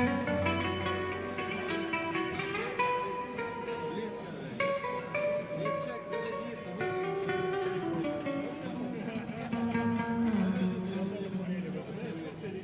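Fingerstyle playing on an acoustic guitar in a non-standard retuned tuning, with a run of plucked notes, some of which glide in pitch. The retuning gives the playing an exaggerated eastern, oriental character.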